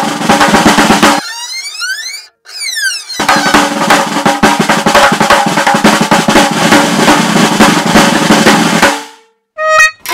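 Fast, continuous drumming on a toy drum with two sticks. About a second in it breaks off for two seconds, during which a whistling tone glides up and down; the drumming then resumes and stops about a second before the end.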